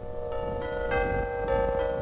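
Music of bell-like tones, struck one after another and left ringing so that they build into a sustained chord over a steady lower tone.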